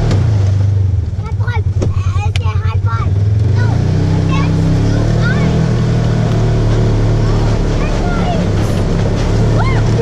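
Polaris RZR side-by-side engine running as it drives up a rough, snowy dirt trail. The engine note pulses in the first seconds, then picks up speed about four seconds in and holds steady.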